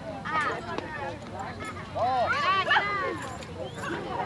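Several high-pitched voices calling and shouting over one another, the loudest calls about two seconds in.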